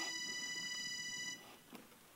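A single high note held steady on a melody instrument, stopping suddenly about a second and a half in, followed by a faint knock.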